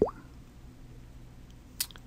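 A quiet pause with low room tone. It opens with a brief wet mouth click, a lip smack as speech stops, and has a single short, sharp click near the end.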